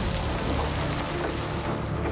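Dirt and gravel pouring from an excavator bucket into an articulated dump truck's bed, a steady noisy pour over low machine rumble, with background music.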